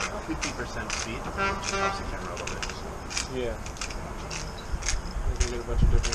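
Indistinct background talk with scattered sharp clicks and taps of handling, a brief buzzing rattle about one and a half seconds in, and a gust of wind rumbling on the microphone near the end.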